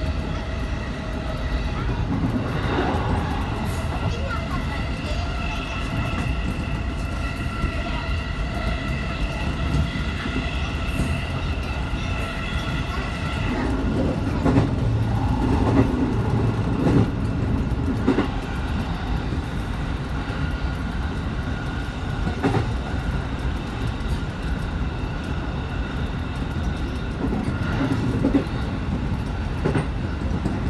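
Commuter electric train running, heard from the driver's cab: a steady rumble of wheels on rail with a high whine of several steady tones that stops about halfway through. After that come a run of knocks and clatter from the wheels on the track, then a few single knocks.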